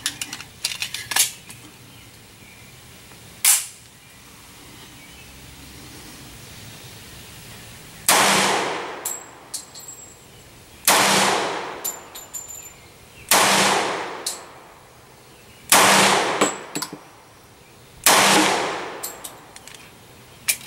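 Five pistol shots from a Glock, slow and evenly paced about two and a half seconds apart, each followed by a long fading echo. A single sharp crack comes about three and a half seconds in, before the series.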